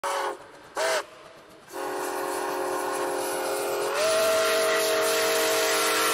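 Steam locomotive whistle: two short blasts, then a long held blast that steps up slightly in pitch and gets louder about two seconds into it.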